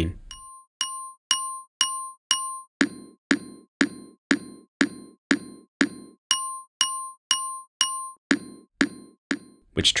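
A glockenspiel note played over and over, about two and a half strikes a second, with its loudest pitches EQ'd out and the noisy frequencies in between boosted. From about three seconds in, a low thud sits under each strike. Near the end the clear ringing tone drops away, leaving more of a bassy percussion sound with a bit of metallic ringing on top.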